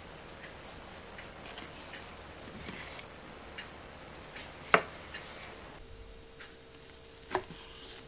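Knife cutting a steamed bean curd skin roll into pieces on a plastic cutting board: quiet cuts with a few sharp taps of the blade on the board, the loudest about five seconds in and another near the end.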